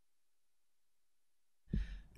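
Near silence, then near the end a short breath or sigh into the microphone just before speech begins.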